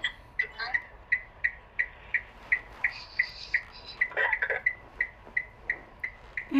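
A steady series of short, high-pitched beeps repeating about three times a second, with faint soft voice sounds between them about half a second in and again around four seconds in.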